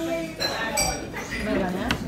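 Crockery and cutlery clinking: one bright, ringing clink about half a second in and a shorter knock near the end, over indistinct background voices.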